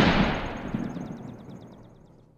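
The rolling, reverberating tail of a single loud gunshot-like boom in the intro, dying away steadily over about two seconds.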